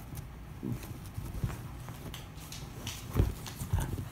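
Dogs scrambling onto and over each other on a couch: a series of soft thumps and scuffles of paws and bodies on the cushions, the two loudest thumps near the end.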